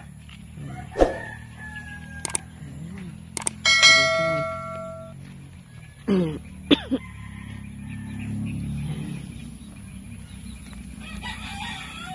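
Farmyard chickens: a rooster crows about four seconds in, ending on a long held note, with a few short clucks and squawks around it, over a steady low hum.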